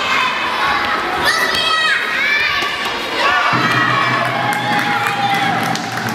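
Young girls shouting and cheering over crowd noise during a children's handball game. A steady low hum comes in suddenly about three and a half seconds in.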